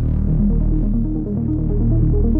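Techno music: a sustained deep bass under a fast repeating synth figure of short notes.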